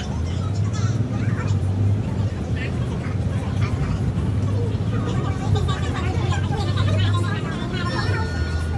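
Steady low drone of a double-decker bus's engine and drivetrain, heard from inside the upper deck as the bus drives, with passengers' voices over it.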